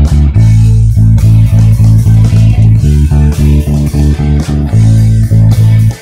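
Electric bass playing a steady eighth-note riff that alternates between D and A, the change to A pushed an eighth note early, over a backing track with drums. The music stops suddenly at the end.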